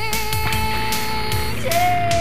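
Blues-rock band music: an electric guitar holds one long note, then a second, lower note from near the end, over bass and drums.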